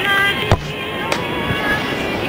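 A sharp thump about half a second in, a football struck in an overhead bicycle kick, then a lighter knock about a second in.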